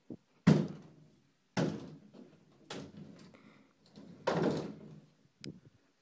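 A series of thuds and knocks: four loud ones roughly a second apart, the last one drawn out, with smaller knocks between them.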